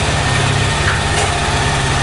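Corded electric hair clippers running with a steady buzz while cutting short hair.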